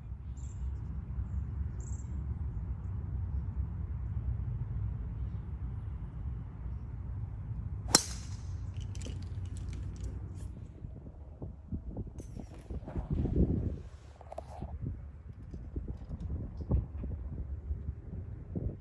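Steady low wind rumble on the microphone, with one sharp crack about eight seconds in and scattered lighter knocks and clicks after it.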